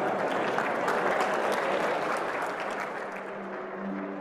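A large audience applauding. The clapping thins out toward the end as music comes in.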